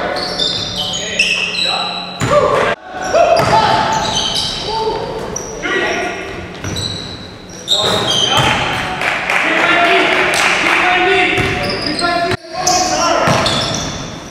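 Basketball being played on a hardwood gym floor: sneakers squeak in short high chirps, the ball bounces, and players call out. Everything echoes in the large hall. The sound drops out briefly twice, about 3 and 12 seconds in.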